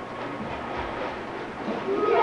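Stage curtain being drawn open, its carriers rolling along the overhead track with a steady rattling rumble.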